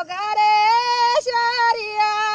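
A woman singing a Pahari folk song unaccompanied in a loud, high voice, holding long notes that step up and down in pitch a few times.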